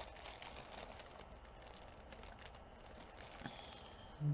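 Faint small clicks and light rustling from handling a strand of faux pearl beads and a clear plastic bag, with a slightly louder click about three and a half seconds in.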